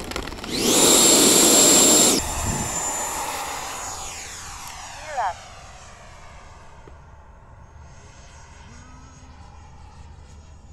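Electric ducted-fan RC jet going past close under power: a loud rushing whine with a high rising tone for about two seconds, then fading steadily as it flies away.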